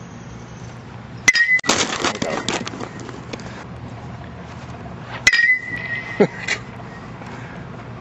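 Baseball struck twice by a metal bat, about four seconds apart: each hit a sharp ringing ping.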